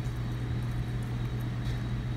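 Steady low hum, with a faint click near the end.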